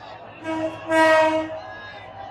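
Train horn sounding two blasts, a short one followed by a longer, louder one, over faint crowd chatter.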